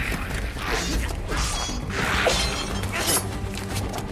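Anime fight sound effects: a string of sudden noisy hits and swishes, about one every half second, over background music.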